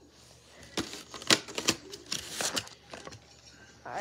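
Handling noise of a small die-cast toy vehicle turned and fiddled with in the fingers close to the microphone: a run of quick clicks and rustles for about two seconds, then a lone click near the end.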